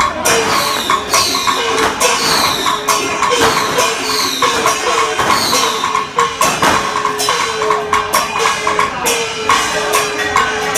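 A Chinese temple-procession percussion band playing: drums and clashing cymbals with a gong whose pitch slides down after each stroke, about once a second.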